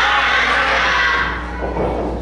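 Crowd of spectators shouting and cheering together at a wrestling match, loud at first and dying away about a second and a half in.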